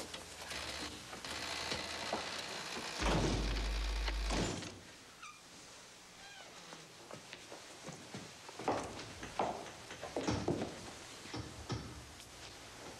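Door of a negative-air-pressure room closing with a thunk, then a rush of air for a few seconds as the room's pressure equalizes, with a deep rumble in its last second or so that cuts off suddenly. Scattered soft knocks and shuffles follow.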